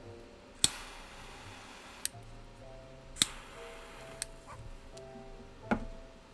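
A torch lighter is clicked five times to relight a cigar. Two of the clicks are followed by about a second of jet-flame hiss. Soft background music plays underneath.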